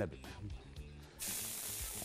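Chopped onion going into hot oil and butter in a frying pan: a steady sizzle starts suddenly about a second in and keeps going.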